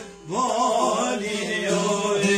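Albanian folk song: after a brief break at the very start, a male voice sings an ornamented line that rises and then wavers in pitch, over the accompaniment.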